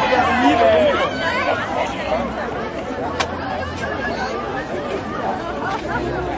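Crowd chatter: many voices talking over one another. One voice calls out in a long falling tone in the first second, and there is a single short click about three seconds in.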